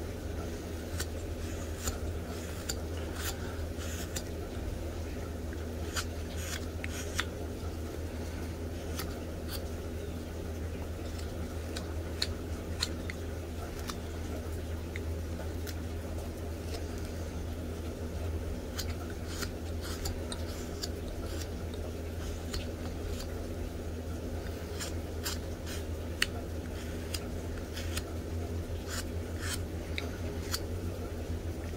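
Pocket knife slicing chips off a block of basswood: a run of short, irregular cuts and snicks while the waste wood is roughed away. A steady low hum lies underneath.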